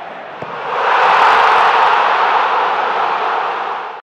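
A loud rushing noise with no pitch to it. It swells about a second in and slowly fades toward the end.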